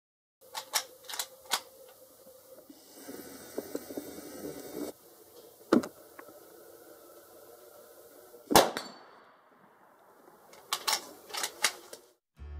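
Rossi R92 lever-action carbine in .44 Magnum, 16-inch barrel, fired twice about three seconds apart, the second shot the louder, each with a short ringing tail. A few quick metallic clicks of the lever being worked come near the start and again near the end.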